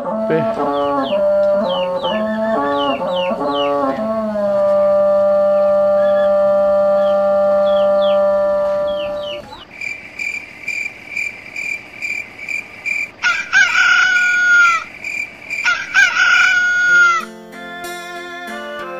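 Instrumental music ending on one long held note, with small bird chirps above it. It gives way to a fast, even chirping and two rooster crows, about thirteen and sixteen seconds in.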